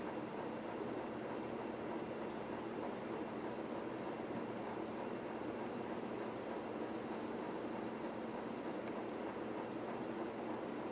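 Steady background hum and hiss of room noise, unchanging throughout, with no speech.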